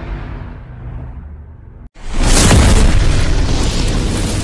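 Cinematic explosion boom sound effects for a fiery logo intro: a deep boom dies away, then cuts off, and a second, louder boom with a crackling edge hits about two seconds in and slowly fades.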